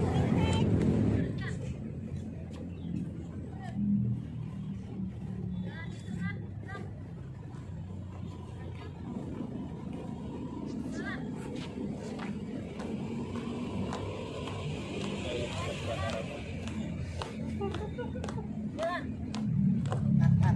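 Faint outdoor ambience: a low hum of traffic with indistinct distant voices and scattered small sounds.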